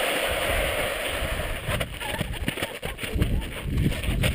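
Wind rumbling on the camera microphone, with shoes scraping and then crunching on loose gravel. A steady hiss fills the first second and a half, then irregular thuds and crunches follow.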